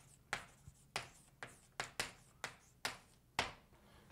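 Writing on a lecture board: a run of short, sharp taps and strokes, about nine, uneven, two or three a second.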